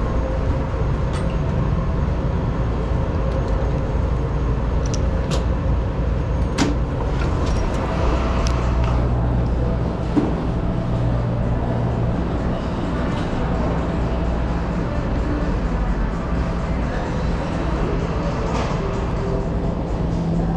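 Monorail station ambience: a steady low rumble with scattered clicks and knocks.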